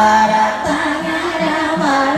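Buddhist sutra chanting by a group of monks and nuns, a melodic chant held and bent in pitch over a steady low beat of about three strokes a second.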